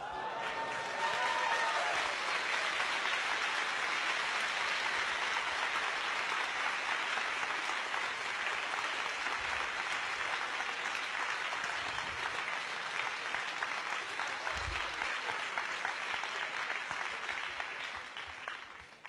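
A large audience in a lecture hall applauding, the clapping starting suddenly and carrying on steadily for a long time before tailing off at the end.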